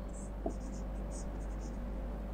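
Marker pen writing on a whiteboard: a string of short, high scratchy strokes as letters are written, over a steady low hum.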